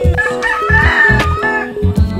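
A rooster crowing once, a call lasting about a second and a half, over background music with a steady beat.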